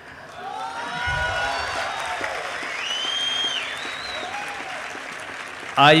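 Large audience applauding, the clapping swelling in about half a second in and holding steady, with a few calls rising over it in the middle.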